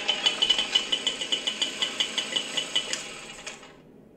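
A rapid, even mechanical rattle of about seven pulses a second, fading away near the end.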